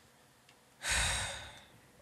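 A man's sigh into a close microphone: one long breath out, starting about a second in and fading away.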